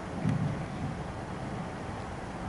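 Meeting-room background: a steady hiss, with a brief low rumble about a quarter second in.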